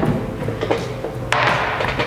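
Plastic lid of a fermenting bucket coming off with a thump, then set down on a stainless steel tray with a rushing scrape about halfway through.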